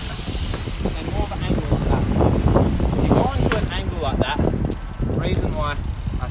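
BMX bike rolling on the concrete ramp, a low rumble with hiss and wind on the microphone for the first few seconds, then voices.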